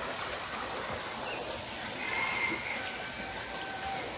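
Small forest creek trickling, a steady soft rush of running water. A few faint, thin, high held tones come in during the second half.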